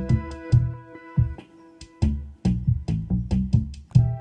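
Electronic synth music from KORG Gadget on an iPad: a held synth pad chord, played live from a touch controller, over a looping drum-machine beat and a pulsing synth bassline. The chord changes near the end.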